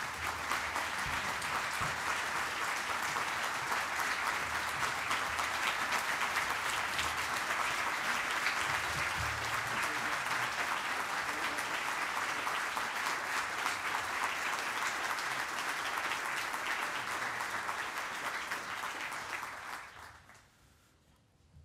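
A roomful of delegates giving a standing ovation, dense steady applause that starts suddenly and dies away at the end.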